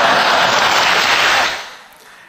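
Audience applause, loud and steady at first, dying away about a second and a half in.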